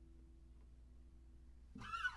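The last acoustic guitar chord dies away to near silence. Near the end comes a short, high call that rises and then falls.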